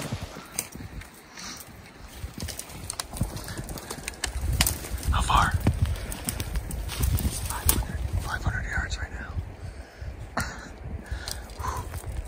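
People pushing on foot through dense, dry brush: twigs and branches snapping and clicking against gear, with a low rumble of wind or handling on the microphone, strongest in the middle. Brief quiet whispers break in now and then.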